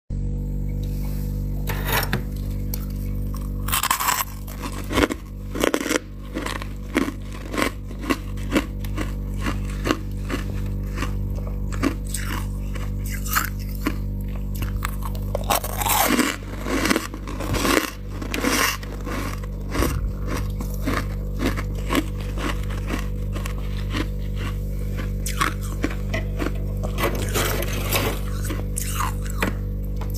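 Crisp, irregular crunches of soft freezer frost, denser and louder a few seconds in and again just past the middle, over a steady low hum.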